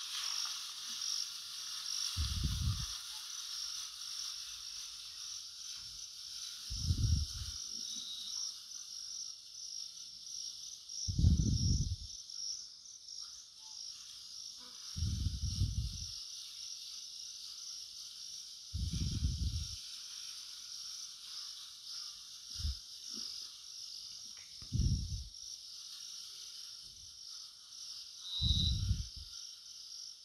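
A steady, high-pitched, fast-pulsing chorus of insects. About eight low, muffled thumps come irregularly a few seconds apart and are the loudest sounds.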